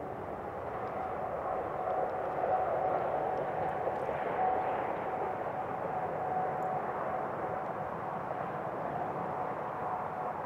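A steady, distant engine drone with a faint steady hum in it, swelling slightly over the first few seconds.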